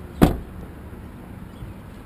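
Rear passenger door of a Cadillac CTS slammed shut: one heavy thud about a quarter second in.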